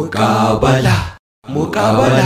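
A deep male voice chanting in two phrases, with a brief silent break a little over a second in.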